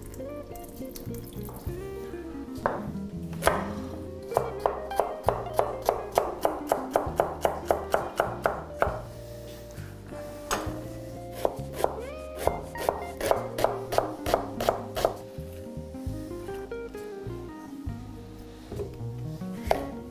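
Kitchen knife dicing carrot on a wooden cutting board: two quick runs of chops, about four a second, the first a few seconds in and the second after a short pause, over background music.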